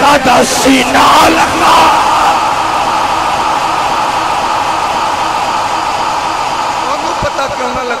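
A crowd of men cheering and calling out together, a dense mass of voices that eases slightly toward the end. The preacher's raised voice is heard in the first second or so.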